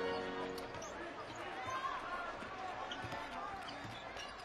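Faint court sound of a basketball game: a basketball bouncing on the court under low, even arena background noise.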